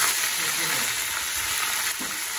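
Marinated chicken pieces sizzling steadily in hot oil in a kadai, with a slotted spoon turning and lifting them. The chicken is being shallow-fried to about three-quarters done.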